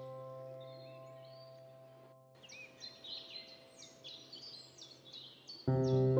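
A held piano chord fades away and stops about two seconds in. Birds then chirp in quick runs of short calls, and a new piano chord is struck near the end.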